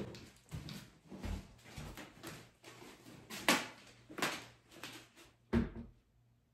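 A person getting up and walking off across a wooden floor: a series of irregular footsteps and knocks, ending with a heavier thump near the end.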